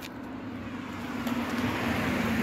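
A vehicle passing on the road: its engine hum and tyre noise grow steadily louder as it approaches.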